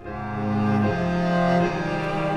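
Music for bowed strings, a low cello-like line in long held notes, coming in at the start and swelling, the notes stepping to a new pitch about a second in and again near the end.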